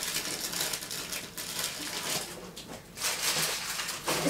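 Plastic bag rustling and crinkling with small knocks of things being handled, louder for about a second near the end.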